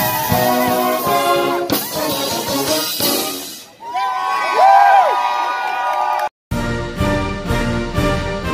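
Brass band playing outdoors, with tubas, horns and drums, followed near the middle by a louder passage of sliding, wavering pitches. A brief drop-out comes about six seconds in, and different music carries on after it.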